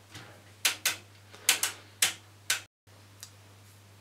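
Front-panel switches of a Tektronix 7603 oscilloscope being clicked, about six sharp clicks over two seconds as the display mode is changed.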